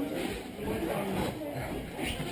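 Indistinct voices of people talking in a gym hall, with no clear words.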